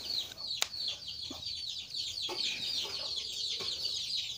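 Birds chirping steadily in the background: a dense run of short, high chirps, each falling in pitch. A single sharp click sounds just over half a second in.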